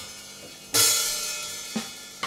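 Electronic drum kit: a cymbal crash a little before the middle that rings out, then a shorter drum hit near the end.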